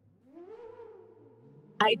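A faint, drawn-out wordless call, lasting about a second, that rises in pitch and then holds.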